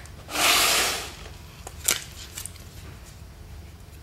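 A plastic battery pack and plastic plate being handled: a short scraping rub near the start, then a few light clicks.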